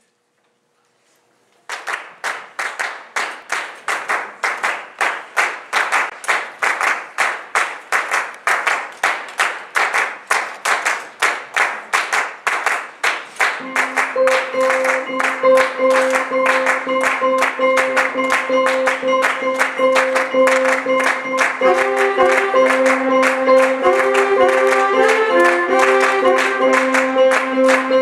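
Jazz ensemble opening a piece with handclapping in a steady rhythm, about three claps a second with uneven accents. About halfway through, held chords and a moving melody line come in over the clapping.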